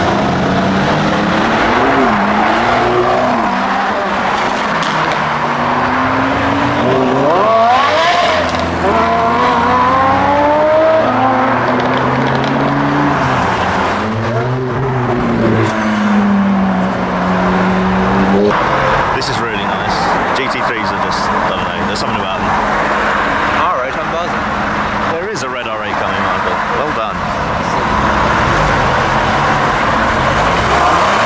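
Several supercars pulling away one after another, their engines revving with rising and falling pitch as they accelerate and change gear. One engine holds a steady note a little past halfway, and there are a few sharp cracks in the second half.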